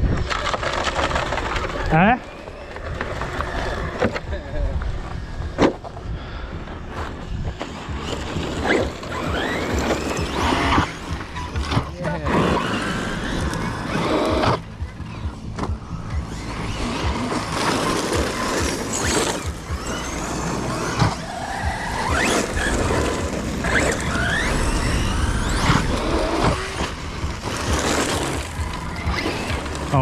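Team Corally Kronos XTR electric RC truggy driving on gravel, its brushless motor whining up and down in pitch as it accelerates and brakes, with tyre noise and occasional sharp knocks.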